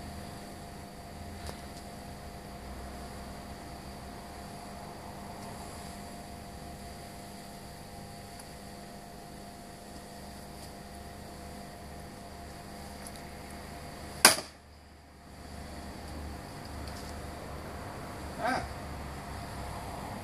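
A single sharp, loud chop about fourteen seconds in: the blade of a Böker Magnum Blind Samurai sword strikes and bites deep into an upright target pole, though not all the way through. A steady background hum runs underneath.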